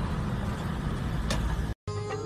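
Steady low rumble of road traffic, with a sharp click shortly before it cuts off suddenly near the end.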